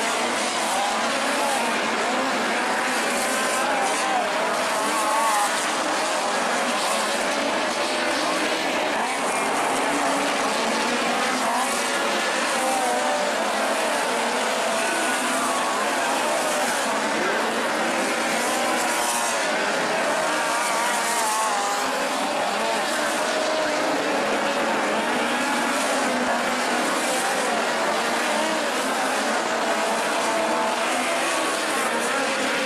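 Several midget race cars' four-cylinder engines running together on a dirt oval, their pitch wavering up and down continuously as they circle, heard from the grandstand with crowd voices underneath.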